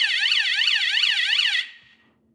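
Lie-detector alarm sound effect: a loud electronic siren warbling rapidly up and down, about five sweeps a second, that cuts off about a second and a half in. It marks an answer as a lie.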